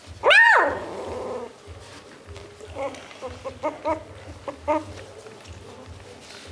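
Beagle puppies about three weeks old squabbling in play. One loud yelp rises and falls in pitch just after the start, then a run of short whimpering yips comes about three to five seconds in.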